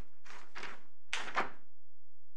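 Sheets of paper rustling in a few short swishes as pages are turned and handled.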